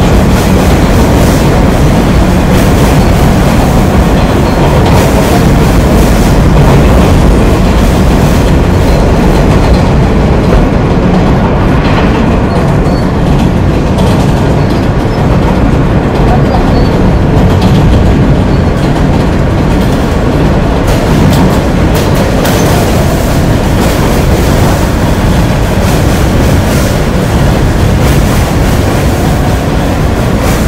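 Loud, steady noise of a New York City subway train running on its rails.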